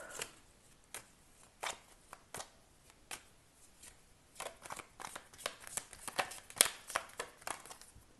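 A deck of round oracle cards being shuffled by hand. The card snaps and flicks are sparse at first and come thicker and faster in the second half.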